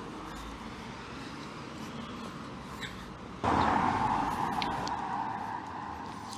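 Street traffic noise: a quiet steady background hum, then from about halfway in a louder rush of a car on the road that gradually fades away.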